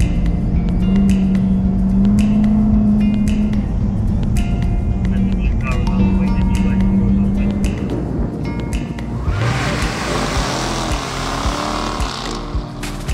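Jaguar F-Type engine running hard at high revs as the car slides on ice, with music underneath. About eight seconds in the revs drop and climb again, and a loud rushing hiss comes in near the end.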